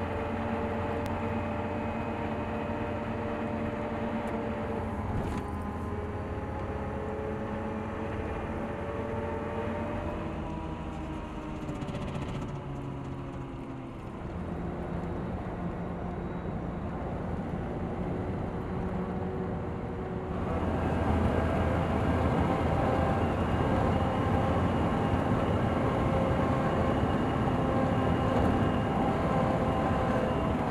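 Car engine and road noise heard from inside the cabin while driving. The engine note falls about a third of the way in, and the sound gets louder and steadier about two-thirds of the way through.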